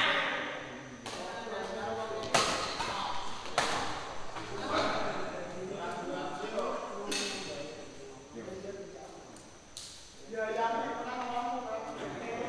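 Badminton rackets striking a shuttlecock in a doubles rally: about five sharp cracks, the first three a little over a second apart, then two more spaced out, with voices calling in between.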